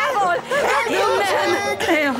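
Several people talking over one another in raised, agitated voices.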